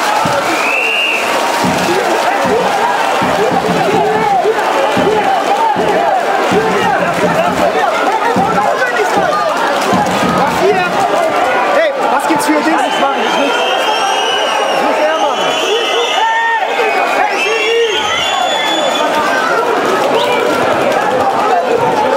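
Large crowd of spectators in a sports hall shouting, cheering and chattering, a dense wall of many voices, with shrill whistles about a second in and again several times in the second half.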